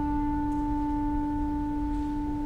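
A single woodwind instrument in a symphony orchestra holds one long, steady note.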